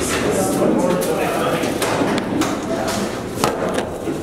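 People's voices in a hard-walled room, with a couple of sharp knocks, about two seconds in and near the end.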